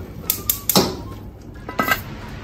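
A few sharp clicks and knocks of kitchen handling at the stove, ending in a quick clatter of a serving spoon knocking against the metal pot.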